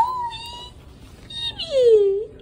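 A dog whining: two drawn-out whines, the first rising at the start and held for over half a second, the second sliding down in pitch near the end.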